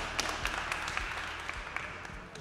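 Audience applauding, dense clapping that eases off slightly toward the end.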